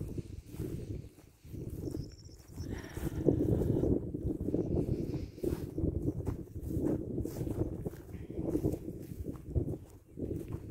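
Wind buffeting a phone's microphone in uneven gusts, a low rumbling noise that rises and falls.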